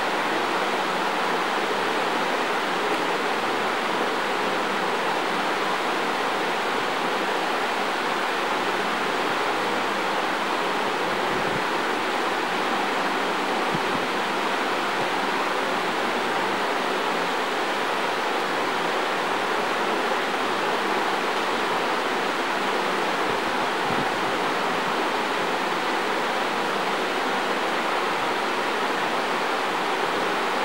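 Steady, even hiss that does not change throughout, with a few faint low thumps here and there.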